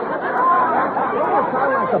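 A jumble of overlapping voices, several pitches at once, from a radio being tuned across stations.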